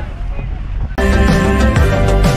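A bus rumbling along a dirt road with wind on the microphone, cut off abruptly about a second in by loud background music with a steady beat.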